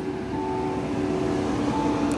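Vehicle engine idling with a steady hum. A higher tone comes in briefly twice.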